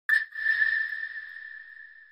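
One struck, bell-like high tone: a sharp attack just after the start, then a single steady pitch that rings on and slowly fades away.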